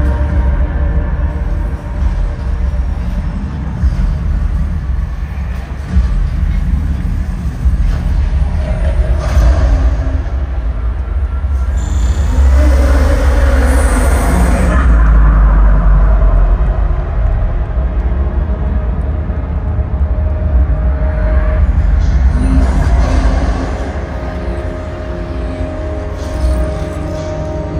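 Concert music over a stadium sound system, heard from the stands, dominated by deep rumbling bass that swells louder through the middle.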